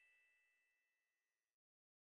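Near silence: the last faint tail of a ringing chime dies away, then the sound cuts to total silence about one and a half seconds in.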